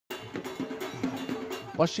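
Drums and a clanking metal percussion beat played in a quick, even rhythm of about four strokes a second, with pitched background sound beneath; a man's voice starts right at the end.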